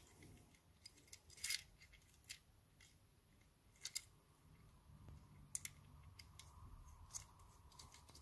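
Faint, scattered clicks of small metal lock parts being handled, as the cam plate is fitted back onto a combination cam lock's cylinder and set in position.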